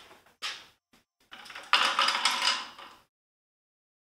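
Handling noise at a wooden vanity: a short soft rustle, then about a second of sliding, rattling scrape as small items and the cabinet's drawer are moved, cutting off abruptly.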